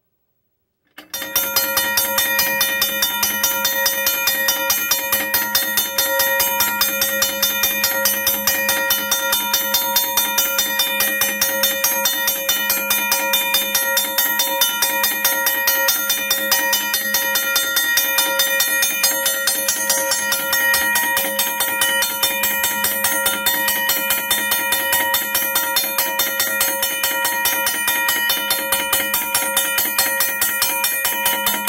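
Second-generation Safetran mechanical railroad crossing bell ringing, its hammer striking the gong dome rapidly and evenly. It starts suddenly about a second in and rings on steadily and loudly.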